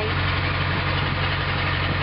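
Long-tail boat's engine running steadily under way, a continuous low drone.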